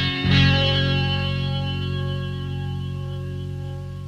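Electric guitar with chorus and distortion strikes a chord just after the start and lets it ring out, slowly fading.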